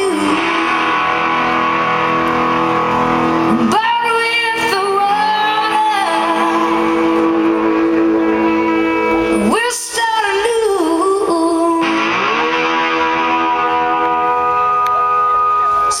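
Live rock band playing with electric guitars, with long held lead notes that bend in pitch over a sustained chord backing.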